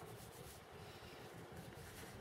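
Faint scratching and rubbing of small plastic model-kit parts being handled and fitted between the fingers, in two brief spells at the start and near the end.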